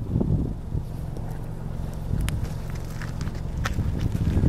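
Steady low wind rumble on the microphone, with a few sharp footsteps on the gravel shoulder in the second half.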